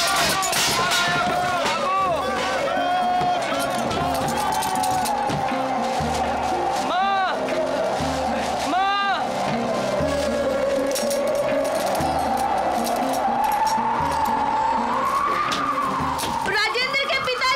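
Dramatic background music for a storm: low drumbeats about once a second under a long wailing tone that wavers up and down, with two rising-and-falling sweeps in the middle, over a hiss of wind.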